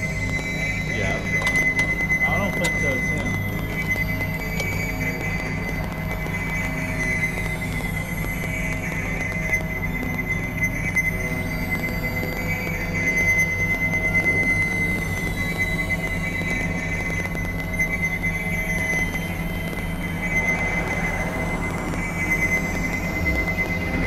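Experimental electronic synthesizer drone music: a steady high tone sits over a dense, rapidly pulsing low drone, with high-pitched glides falling again and again above it.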